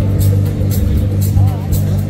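Electronic dance music with a heavy bass line and a steady beat, about two beats a second.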